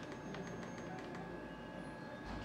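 Steady electrical hum of an ultrasound machine with a run of light clicks in the first second or so, typical of its control panel being worked as the colour Doppler box is set.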